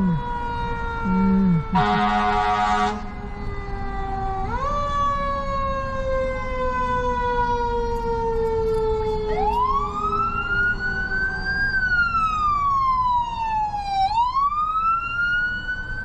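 Fire engine siren wailing, its pitch gliding slowly down, then sweeping sharply up about four seconds in and rising and falling in long slow cycles. A blast of the engine's horn sounds for about a second, about two seconds in.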